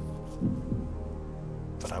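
Tense game-show background music: a low, steady drone with a throbbing pulse.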